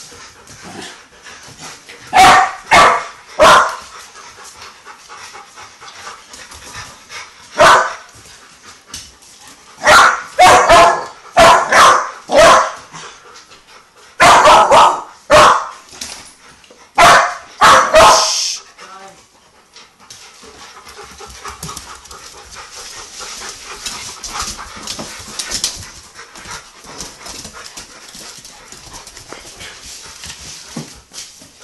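A young pit bull puppy barks at a bigger dog to get him to play. The sharp single barks come in bunches of two to five: three about two seconds in, one near eight seconds, five between ten and thirteen seconds, then three and three more up to about eighteen seconds. After that only a quieter, even noise remains.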